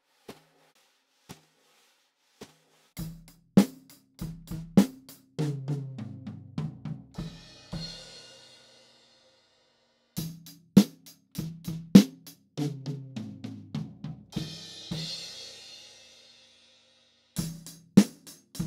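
Wire brushes tapping lightly on a snare drum, then a full drum kit played in short phrases of kick, snare and tom hits, each ending in a cymbal crash that dies away. The phrase is heard through a close mic on the snare's top head, with the kick, toms and cymbals bleeding into it, and it repeats after a pause of about a second.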